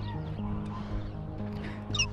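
A few faint calls from distant geese over quiet background music.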